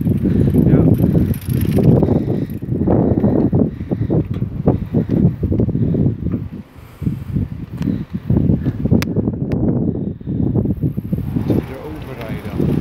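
Wind buffeting the microphone of a camera carried on a moving bicycle, a loud uneven low rumble, with the bike rattling and a couple of sharp clicks about nine seconds in.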